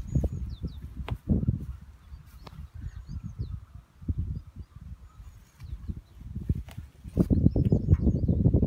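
Birds chirping in short high calls over an uneven low rumble that swells about seven seconds in, with a few sharp clicks.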